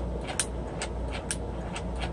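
Steady low electrical hum from an energized throttle body and E-gas module bench rig, with a few faint clicks about half a second apart.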